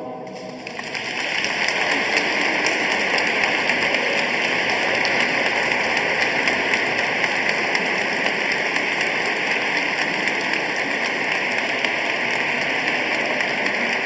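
A choir's last chord dies away in the church's echo, then audience applause swells up within about a second and carries on steadily as many hands clap.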